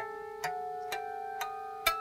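Caparison electric guitar through a Laney amp, harmonics and fretted notes picked one at a time about every half second, each ringing on so they stack into a dissonant chord.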